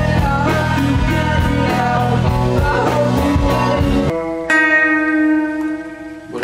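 Live rock band playing: drums, electric guitar and sung vocals. About four seconds in it cuts abruptly to a lone electric guitar through an amp, clean chords ringing out and fading.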